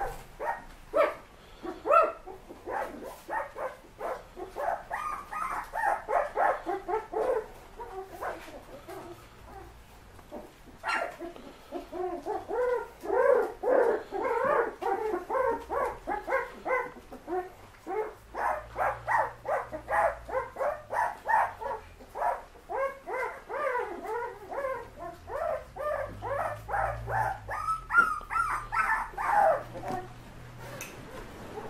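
Several young puppies yipping and whimpering in a rapid stream of short, high calls, with a brief lull a third of the way in and busier calling through the second half.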